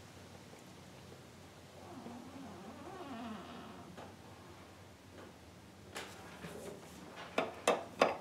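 Faint sound of air and brake fluid escaping from a brake line fitting cracked open at the master cylinder while the brake pedal is held down, a sign of air still trapped in the line. Near the end, a few sharp metallic clicks from the wrench on the line fitting.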